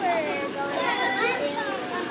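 Several children's voices talking and calling out at once, overlapping one another.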